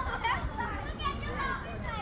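Children's voices at play on a playground: high-pitched calls and chatter, several voices overlapping, over a low steady rumble.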